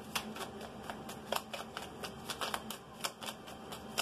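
A tarot deck being shuffled by hand: a quiet, irregular run of card clicks and riffles, about five a second.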